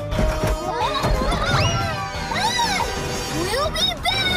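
Cartoon background music with a series of wordless vocal calls that swoop up and down in pitch, most strongly about two and a half seconds in.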